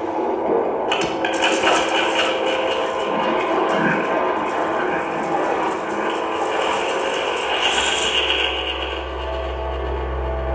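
Live experimental electronic noise music: a dense, static-like texture with many steady held tones and scraping grain. A deep low drone swells in near the end.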